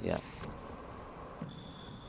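Faint court sound of a four-wall handball rally: the rubber handball striking the walls and floor, heard under a commentator's brief "yeah" at the start.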